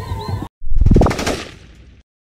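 Crowd voices that cut off half a second in, then a loud channel-logo sound effect: a sudden rapid run of hits with a heavy low end that fades out over about a second.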